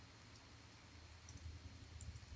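Near silence with a few faint, scattered computer keyboard keystrokes as code is typed.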